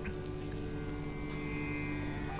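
A steady low hum made of several held tones in a pause between speech.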